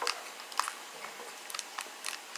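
Foil Pokémon booster-pack wrapper crinkling as it is torn open by hand, a few scattered crackles.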